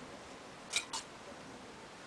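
Two light metallic clinks, about a fifth of a second apart, a little under a second in, from the brass thurible and incense tools being handled as incense is put on the coals.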